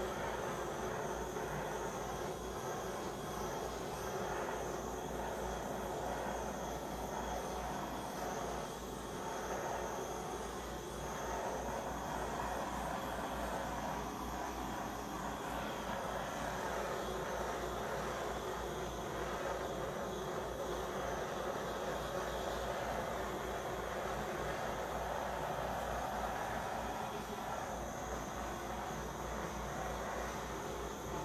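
Handheld butane torch flame running with a steady hiss as it is swept over wet acrylic pour paint, torching to bring up cells and clear air bubbles.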